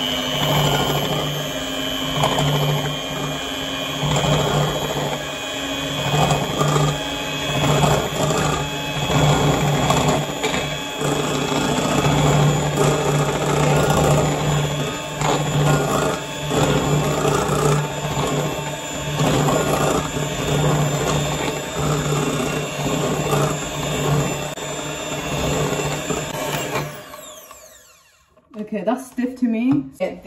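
Electric hand mixer running steadily, its beaters whipping egg whites and sugar into a white foam in a glass bowl. It switches off about 27 seconds in.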